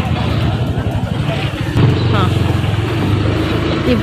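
Street traffic: a motor vehicle's engine running close by. A steady engine hum grows stronger about two seconds in, over a low rumble.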